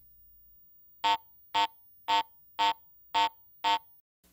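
Garrett AT Pro metal detector sounding its low ferrous-target tone in Pro mode: six short beeps of the same pitch, about two a second, starting about a second in. The low tone signals a ferrous target such as a nail, iron or steel.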